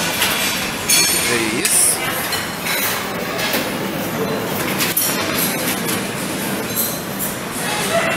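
The din of a busy buffet dining room: many people talking in the background, with plates and serving utensils clinking against steel trays, several sharper clinks standing out.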